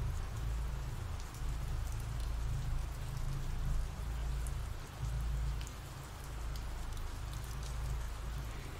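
Steady rain falling, with scattered drop ticks over a continuous low rumble.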